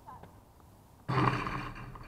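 A person's loud, wordless yell starting suddenly about a second in and trailing off over most of a second.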